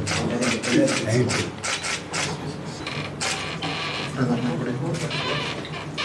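Men talking quietly in a small room, a voice saying "thank you", with a quick run of sharp clicks in the first couple of seconds.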